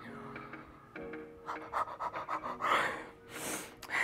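A woman panting, out of breath from rebounder exercise, with two heavy breaths in the second half, over faint background music with held notes.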